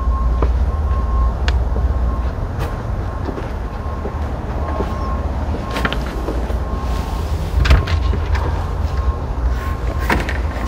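Steady low rumble of nearby construction work and road traffic, with scattered clicks and knocks of footsteps and a door latch as a side door is opened about three-quarters of the way through.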